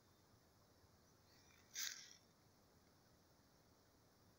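Near silence, with one brief faint sound about two seconds in.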